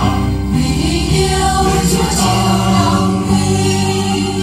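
A choir singing a Vietnamese Catholic hymn.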